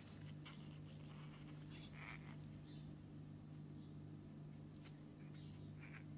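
Near silence: room tone with a faint steady low hum and a few faint ticks.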